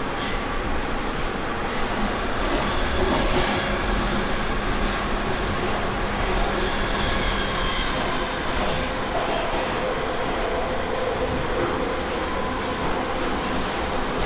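Moscow metro train running through a tunnel, heard from inside the car: a steady, loud rumble and rush of wheels on rail, with a faint, even hum beneath it.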